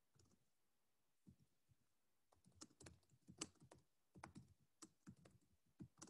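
Faint typing on a computer keyboard: a few scattered key clicks, then a quick, dense run of clicks from about two seconds in.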